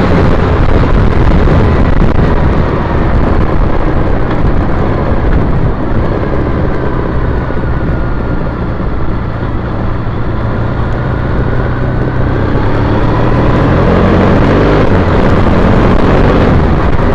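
A 2010 Triumph Bonneville T100's parallel-twin engine running under steady wind rush on the camera microphone while riding in traffic. The sound eases off as the bike slows behind cars around the middle and builds again near the end as it picks up speed.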